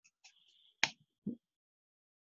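A single sharp click a little under a second in, followed shortly by a brief, softer knock, over otherwise quiet call audio.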